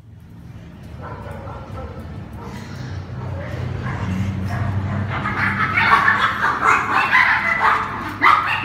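Brussels Griffon dogs play-fighting, yipping and barking, the noise building steadily and turning into rapid, loud bursts over the second half.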